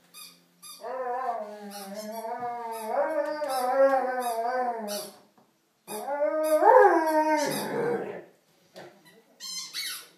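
Rhodesian Ridgeback howling: a long wavering howl lasting about four seconds, then a second howl that rises and falls, followed near the end by a few short high whines.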